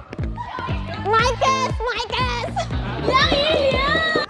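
Pop music with a steady bass beat, with several young women laughing and squealing excitedly over it, loudest near the end.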